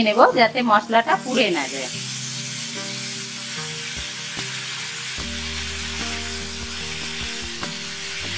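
Tomato and spice masala sizzling in oil in a frying pan, stirred with a wooden spatula, with a steady hiss after the first couple of seconds.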